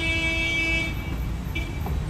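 A vehicle horn sounds one steady toot of about a second, then a second short toot near the end, over the steady low rumble of street traffic.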